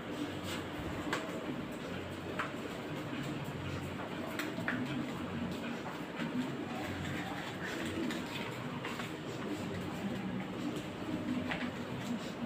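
Crinkling and rustling of bijao leaves as they are folded tightly around portions of plantain dough, heard as scattered short crackles over a steady background hum.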